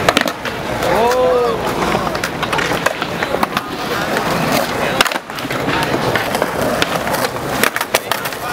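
Skateboard on concrete: wheels rolling and the wooden deck clacking again and again as flatground flip tricks are popped and landed.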